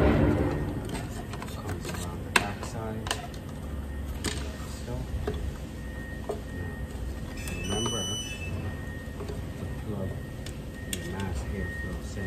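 Scattered clicks and knocks as gloved hands handle hoses, wiring and plastic intake parts in a BMW 535i's engine bay. There is one sharp click a couple of seconds in, the loudest, then a few lighter ones, over a steady low background hum.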